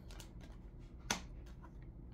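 A single sharp click of oracle cards being handled on a tabletop, about a second in, with a few faint ticks of the cards before it.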